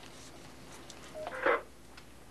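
Ham radio transceiver giving a short beep followed by a brief burst of static about a second and a half in, over a low steady hiss.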